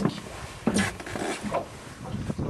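Spinning reel being cranked in on a hooked fish, giving a few short, uneven mechanical rasps.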